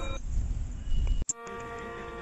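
Break in the soundtrack between two sung passages: a low rumble, an abrupt cut with a click a little over a second in, then a steady held drone of several tones.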